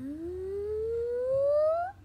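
A single pitched tone that glides steadily upward over about two seconds, getting a little louder, then cuts off abruptly: a rising 'magic' effect sound as the sweater changes colour.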